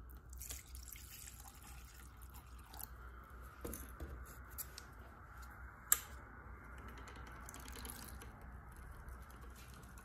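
Faint pouring of liquid from a plastic bottle into a glass beaker, with small scattered clicks, and one sharp click about six seconds in as the magnetic stirrer-hotplate's knob is turned.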